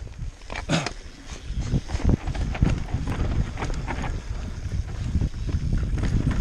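Mountain bike riding down a dirt trail: tyres rumbling over the ground and the bike rattling and knocking over bumps, with wind on the microphone. It builds up over the first second or two.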